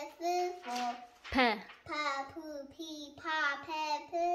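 A young girl's voice chanting Amharic fidel syllables one after another in a sing-song, about two syllables a second, with one sharp tap about a third of the way in.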